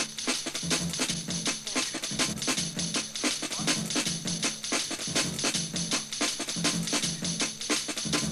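A jungle record playing: a fast, busy breakbeat with sharp drum hits several times a second over a repeating bass line.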